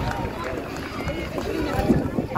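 Indistinct voices talking, not close to the microphone, over a steady low rumble of wind buffeting the phone's microphone.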